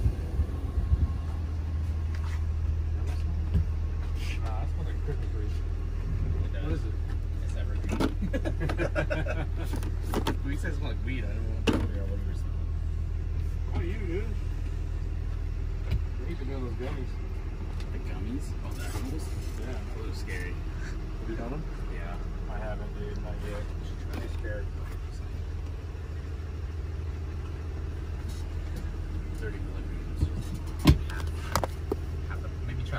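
Steady low machine hum inside a Snap-on tool truck, with faint talk in the background and scattered clicks and knocks of items being handled, the sharpest about 8, 10 and 12 seconds in.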